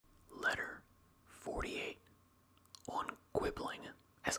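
A man whispering close to a microphone in three short phrases, the start of a whispered reading.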